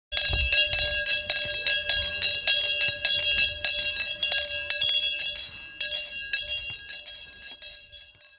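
A brass school handbell being rung by hand, struck rapidly at about three strokes a second. The ringing fades away near the end.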